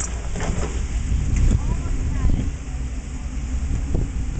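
A modified rock-crawling Jeep's engine running low and slow as it crawls over boulders, a steady low rumble with scattered short knocks.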